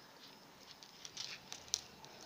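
Faint clicking and rustling of small pearl beads and beading line being handled as the threads are pulled tight, with a few light ticks in the second half.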